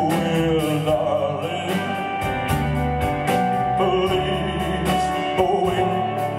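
Live band playing a ballad behind a male singer, who holds long sung notes over guitars, drums and cymbals.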